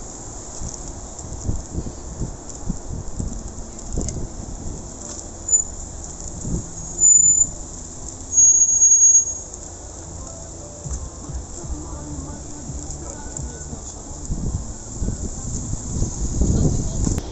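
Street ambience on a busy riverside promenade: the low hum of traffic with passers-by talking. About seven seconds in comes a short, loud high-pitched squeal, then a second, longer one about a second later.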